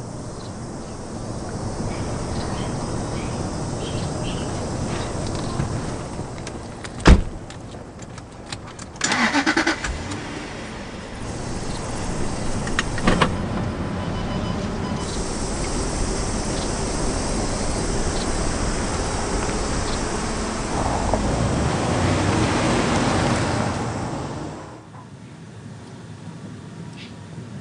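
Car sounds: a sharp knock about seven seconds in, like a door shutting, then a short louder burst. After that comes steady engine and road noise while driving, which drops away near the end.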